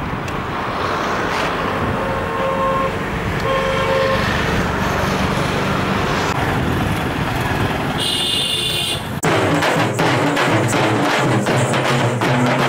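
Street traffic noise with a few short vehicle horn toots. About nine seconds in it cuts suddenly to a drum band beating rapid strokes.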